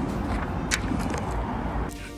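Outdoor street ambience: a steady rumble and hiss of traffic, with a faint click about three-quarters of a second in. It cuts off just before the end.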